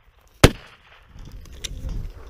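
A single loud shotgun shot about half a second in, sharp and short, followed by a low rushing noise.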